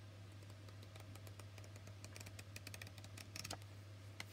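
Faint paper ticks and flutters as the cards of a small paper pad are flicked through by hand, a quick run of light clicks through the second half.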